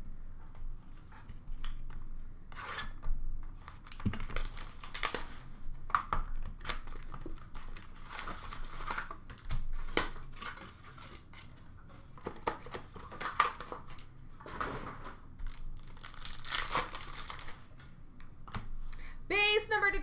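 Upper Deck SPx hockey card packs being torn open and their wrappers crinkled, in a run of short tearing and rustling bursts as the cards are handled.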